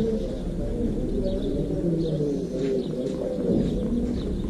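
Birds calling, with low cooing that wavers throughout and a few short high chirps.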